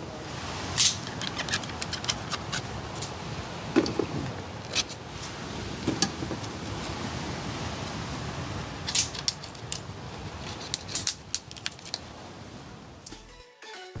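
Knife cutting and scraping coconut flesh out of the shell: a run of short, sharp scrapes and clicks over a steady hiss.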